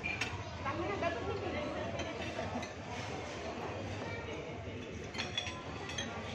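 Forks and knives clinking against plates a few times, over people talking and chatting at the table.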